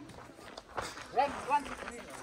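Voices outdoors, with two short, high calls that rise in pitch a little past a second in.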